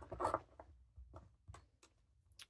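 Faint handling sounds of a hand on a paper planner: a short scratchy rustle of paper at the start, then several small separate clicks and taps.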